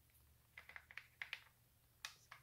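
Faint light clicks, about half a dozen within a second, as a small machine screw is handled and set into a screw hole in a cordless string trimmer's plastic housing.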